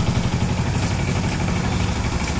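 A small vehicle engine running steadily with a fast, even throb.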